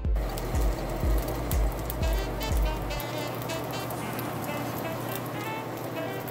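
Rack of lamb searing in hot oil in a cast-iron skillet, a steady sizzle, under background music with a deep beat that drops out about halfway through.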